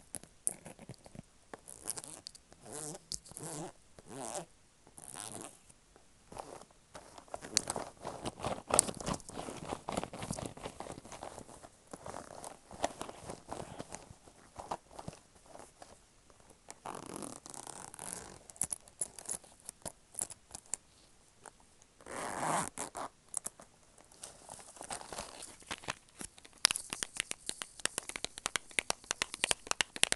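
A leaf-print zip pouch being zipped and handled right against an earphone microphone. It makes irregular scratchy clicks and rustles, with longer strokes about seventeen and twenty-two seconds in.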